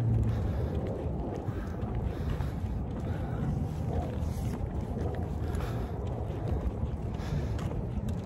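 Wind buffeting a phone's microphone outdoors: a steady low rumble.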